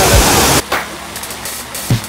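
Water spray from a large jet fountain, a loud even rush that cuts off suddenly about half a second in. After it comes quieter background music with deep drum beats.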